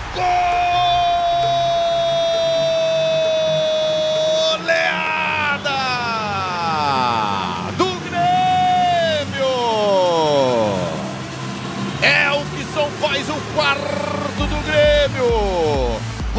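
A football TV commentator's drawn-out goal call: one long held shout lasting about four and a half seconds, then a string of long shouts sliding downward in pitch, with background music under it.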